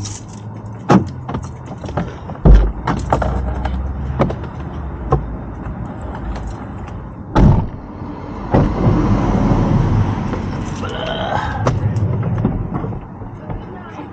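Knocks and clunks of things being handled and moved inside a parked van: five or so sharp knocks, the loudest about two and a half seconds in, then several seconds of rustling, rushing noise as someone moves about in the cabin.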